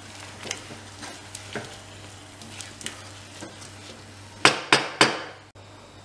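Wooden spoon stirring thick, cheesy risotto in a saucepan, with soft scraping and small clicks. About four and a half seconds in come three sharp knocks in quick succession, the spoon striking the pot.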